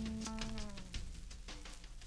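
The song's last held note, a steady pitched tone with overtones, sags slightly in pitch and dies away about a second in, leaving the record's surface noise with light crackle and a faint low hum.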